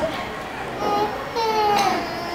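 Children's high-pitched voices calling out and shrieking at play, with a couple of long falling calls in the second half.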